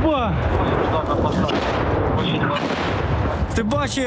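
A shell explosion in a combat zone, heard through a body-worn camera's microphone: a sudden loud blast that carries on as a dense, unbroken din, with men's voices shouting over it.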